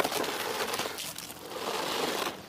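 Steady rustling and scraping from handling mesh gutter guard and a rope against asphalt roof shingles, lasting about two seconds.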